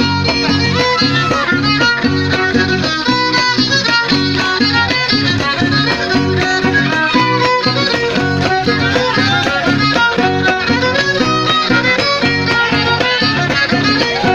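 Huasteco trio playing a son: the violin carries the melody over a steady strummed rhythm from a jarana huasteca and a huapanguera.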